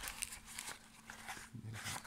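Faint rustling and light clicks of a nylon knife sheath being handled and turned over in the hands, with a short low vocal sound about one and a half seconds in.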